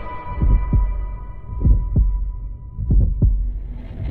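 Heartbeat sound effect of a movie trailer: three double thumps, lub-dub, about a second apart, over a faint high ringing tone that fades away.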